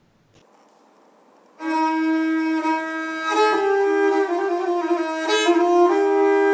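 A Pontic lyra (kemenche) being bowed. After about a second and a half of quiet it starts with a long held note, then steps to neighbouring notes, the slow opening of a Pontic hymn.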